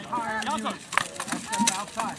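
Several voices shouting across the field in the first part. They are followed by a few sharp knocks, typical of rattan weapons striking shields and armor in a melee.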